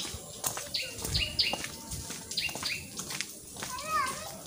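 A bird calling: about five short, sharp chirps that each sweep down in pitch, coming singly and in quick pairs.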